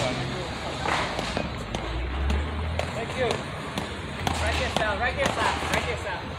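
Indistinct voices of players talking on an outdoor court, with scattered short, sharp knocks of a rubber ball against paddles and concrete.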